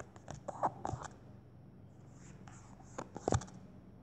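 A pen scribbling in short, irregular scratching strokes, in a burst in the first second and another, louder one about three seconds in, over a steady low hum.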